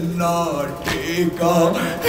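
Men chanting a noha, a mourning lament, in a steady sung voice through a microphone and loudspeaker. A couple of sharp slaps of chest-beating (matam) cut through it.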